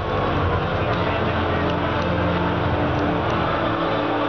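Loud arena ambience: a crowd talking under a low, droning soundtrack from the arena's speakers.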